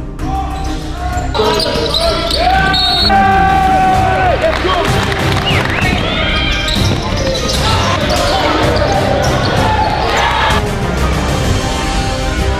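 Live basketball game sound in a gymnasium: sneakers squeaking on the hardwood, the ball bouncing, and players' voices calling out, over background music with a steady beat.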